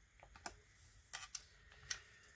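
A few faint, sharp clicks and light taps, about four spread over two seconds: a bamboo brush handle being handled and set down on the painting table.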